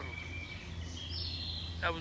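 Birds singing in the open, held whistled notes that step up in pitch about halfway through, over a steady low rumble; a man's voice comes back in near the end.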